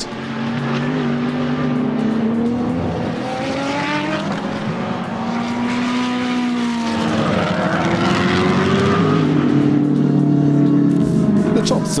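GT3 race car engines at speed, their note climbing as they accelerate through the gears and dropping as a car passes by, with several cars heard in turn.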